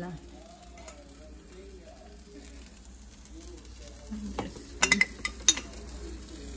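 Food sizzling quietly on an electric griddle as a chicken and pepper quesadilla cooks. Near the end come a few sharp clinks from a spoon and a glass salsa jar.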